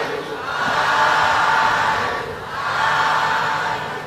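Congregation calling out together in unison, two long drawn-out calls of many voices, the customary 'sādhu' of assent at the close of a Burmese Buddhist sermon.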